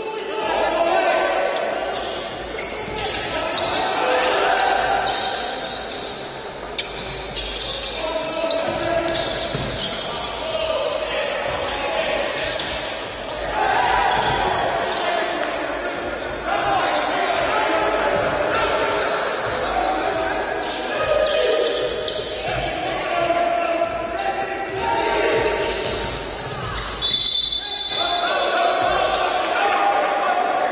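Basketball dribbled and bouncing on a hardwood court, echoing in a gym hall, with players' voices calling out throughout. A referee's whistle blows near the end.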